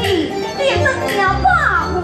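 Live Taiwanese opera (gezaixi) song: a high voice draws out and bends a sung note between the words of a line, over the band's accompaniment.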